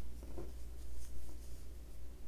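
Faint rustling and scratching of yarn being drawn and wrapped over a crochet hook, in a few short soft strokes over a steady low hum.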